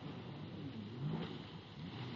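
Jet ski engine running at a distance, its pitch repeatedly rising and falling as the throttle is worked, with a brief burst of noise about a second in.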